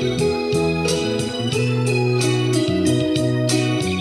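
Instrumental passage of a slow romantic ballad on a live electronic keyboard with an organ sound. It has sustained chords, a moving bass line and a steady beat.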